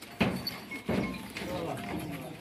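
Rajanpuri goats bleating in a crowded pen, with a wavering call in the second half, among people's voices.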